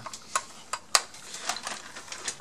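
Hard plastic parts of a Dyson DC29 vacuum, the cyclone shroud and the clear dust canister, clicking and knocking against each other as they are handled and fitted together. About half a dozen sharp, irregular clicks and taps.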